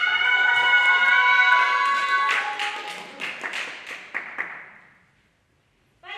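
Audience clapping and cheering, dying away about five seconds in.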